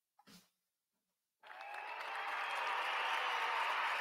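Near silence for about a second and a half, then applause with some cheering fades in and holds steady.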